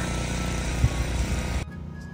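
Wind buffeting the microphone outdoors in a heavy snowstorm: a steady low rumble with a hiss over it. It cuts off suddenly near the end, leaving quiet room tone.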